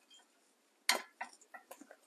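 Light handling noises of small die-cut paper pieces being picked up from a tabletop: a sharp tap about a second in, then a few faint ticks.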